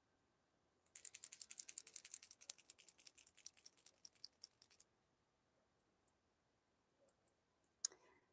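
Aerosol spray can of floating-silver paint being shaken, its mixing ball rattling rapidly for about four seconds, starting about a second in.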